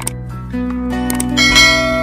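Background music with a sharp click at the start and a bright bell-like ding about one and a half seconds in. The click and the ding are the sound effects of a subscribe-button animation: a cursor click followed by the notification-bell chime.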